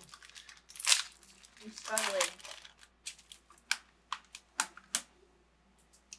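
A plastic snack bag of pork rinds torn open with a short rip about a second in, then crinkled and handled with a run of sharp crackles.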